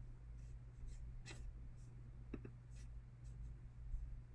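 Faint, scattered clicks and light taps, about eight in four seconds, over a low steady hum.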